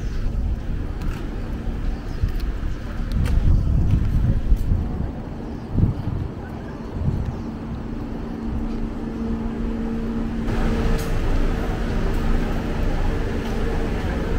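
Street traffic: cars passing with a low rumble, and a steady engine hum setting in about halfway through.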